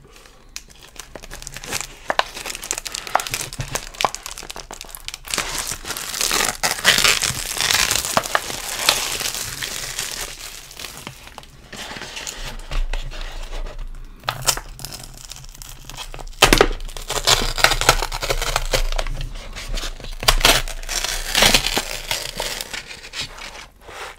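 Close-miked crinkling and tearing of an instant noodle cup's packaging as it is handled and its paper lid is peeled back, in irregular spells with brief pauses.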